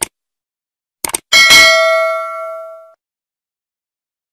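A few short clicks, then a single loud bell-like ding about a second and a half in, ringing out with several clear tones and fading within about a second and a half.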